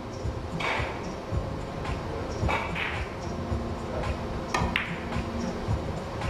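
Three-cushion carom billiards shot: the cue strikes the cue ball and the balls clack against each other, several sharp clicks spread over a few seconds over a steady low hum of the hall.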